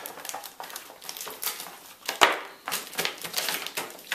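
Plastic bag film and packing tape being handled and smoothed down: irregular crinkling and rustling with small clicks, and one sharp click about two seconds in.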